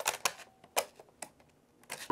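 Sharp plastic clicks from a portable cassette recorder as its cassette door is pushed shut and its piano-key buttons are pressed: about five clicks spread across two seconds, with near quiet between them.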